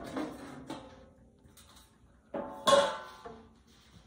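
Metal lid of a vintage tin portable grill being lifted off and handled: light metallic clinks, with a louder ringing scrape about two and a half seconds in.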